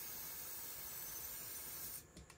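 Aerosol freeze spray hissing steadily as it is sprayed onto a lithium battery's BMS temperature sensor to chill it, cutting off abruptly at the end.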